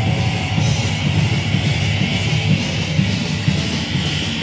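Live rock band playing loudly without vocals: two electric guitars through amps over a drum kit.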